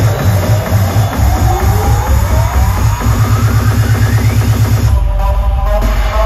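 Synth-pop band playing live electronic dance music through a PA, with a fast pulsing bass beat and a synth sweep rising in pitch over about three seconds. About five seconds in the top end drops away and the bass carries on.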